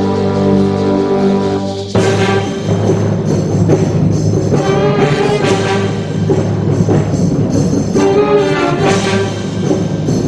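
School wind band of saxophones, clarinets, trombones, trumpets and tuba playing. A held chord sounds for the first two seconds, then the band breaks into a busier passage with accented notes.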